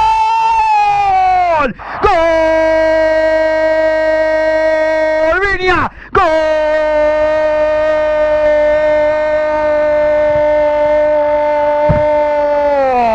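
A radio football commentator's long drawn-out goal shout, "¡Gooool!", held on one steady high note for several seconds at a time. He breaks twice briefly for breath, and the pitch slides down as each held note ends.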